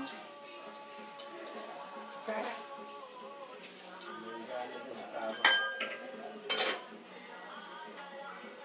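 Dishes and cutlery clinking out of sight, with two louder, sharp clinks a little past the middle, the first ringing briefly.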